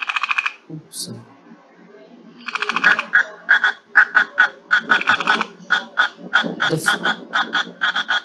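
Recorded call of a cricket frog: a brief pulsed burst at the start, then from about two and a half seconds in, a long run of fast clicking pulse trains repeated in quick succession.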